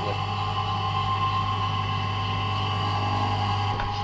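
Steady mechanical hum from a running motor: a low drone with a few held higher tones, unchanging throughout.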